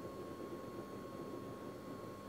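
Quiet room tone: a steady hiss with a faint, thin steady tone running through it, and no distinct sounds.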